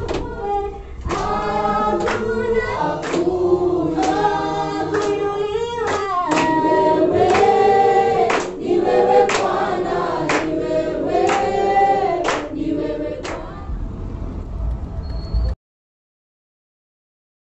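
A church congregation singing together, with hand claps about once a second. The singing stops about thirteen seconds in, and the sound cuts off abruptly shortly before the end.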